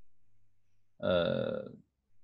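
A man's voice making one drawn-out hesitation sound, "aah", about a second in, after a short, nearly silent pause with a faint low hum.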